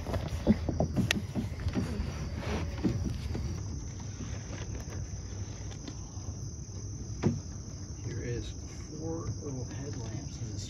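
Steady high-pitched insect chorus from the swamp at dusk, over a low rumble, with a few light knocks in the first three seconds.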